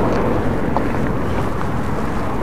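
Wind blowing across the microphone: a steady rush of noise, heaviest in the bass, with no pitch to it.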